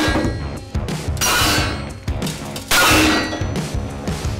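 Three loud metallic clangs, each ringing out briefly, coming about a second and a half apart over background music.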